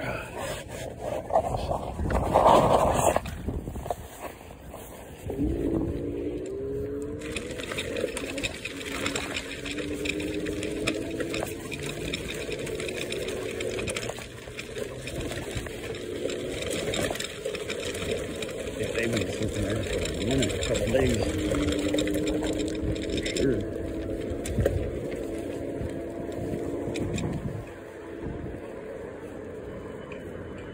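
Electric scooter being ridden: its motor gives a low whine whose pitch rises and falls with speed, over tyre and rattle noise as it crosses gravel and pavement. A loud jolt comes about two to three seconds in, as it comes off the curb.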